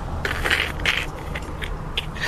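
Short crackling and rustling noises, several in two seconds, over a steady low hum.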